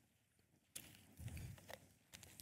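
Near silence: room tone, with a few faint soft knocks and small clicks about a second in.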